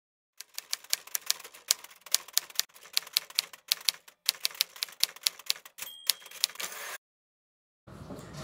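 Typewriter sound effect: a quick, irregular run of key strikes, several a second, with a short bell-like ring about six seconds in, like a typewriter's carriage-return bell. The strikes stop suddenly about a second before the end.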